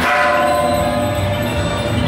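Temple-procession music with a metallic strike at the start whose ringing tones last about a second, over continuous percussion.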